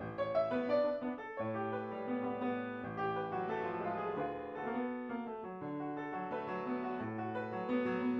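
Solo piano music: a slow passage of held notes and chords.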